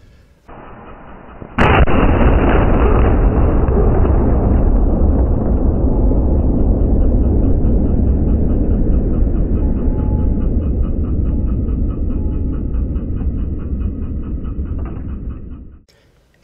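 A single sharp, loud bang about a second and a half in as the Lorentz plasma cannon fires: a 240,000-volt Marx bank charged to 210,000 volts discharges a lightning-strength arc into a CRT television. A low rumble follows and fades slowly over the next dozen seconds.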